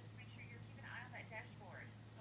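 Faint woman's voice on the other end of a phone call, heard thin and distant as it leaks from the handset's earpiece, over a steady low hum.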